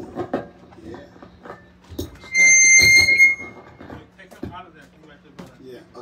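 Microphone feedback through the PA during a mic check: a loud, steady, high-pitched squeal on a single held pitch, lasting about a second and starting a couple of seconds in.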